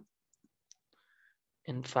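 A few faint, brief clicks in a short pause between a man's spoken words.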